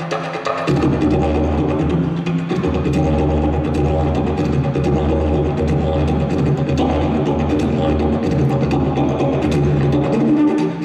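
A long wooden didgeridoo played live: a continuous low drone with shifting overtones, breaking off briefly just under a second in.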